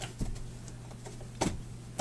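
Hands handling a rubber gas mask while a cheek filter is pushed into its pocket: faint rubbing, with two short clicks, one just after the start and one about a second and a half in.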